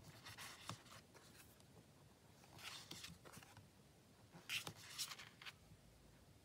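Faint rustle of tarot cards being slid off the deck and laid down on a cloth, three short soft brushes spread across a near-silent stretch.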